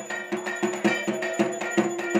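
Aarti percussion: struck metal beaten in a steady rhythm of about four strokes a second, its ringing tones sustained under the strokes.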